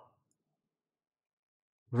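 Near silence in a pause between a man's spoken phrases, with the end of one word fading out at the start and his speech starting again at the very end.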